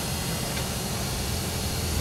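Steady low drone of a school bus engine and road noise heard from inside the cabin while driving, with an even hiss over it.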